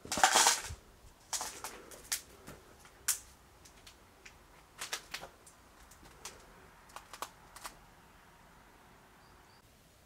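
A loud rustle at the start, then scattered sharp clicks and crunches from footsteps over debris and loose paper in an empty room. These die away in the last couple of seconds.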